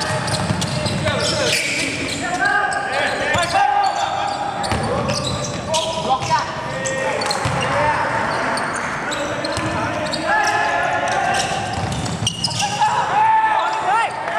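Live sound of a basketball game on a hardwood court: sneakers squeaking in many short, sharp chirps as players cut and stop, with the ball bouncing on the floor, in a large, echoing hall.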